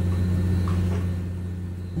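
A steady low rumble that eases off slightly near the end.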